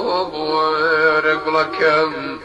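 A man singing a Kurdish folk song, holding long notes with a quavering vibrato and moving to a new note near the end.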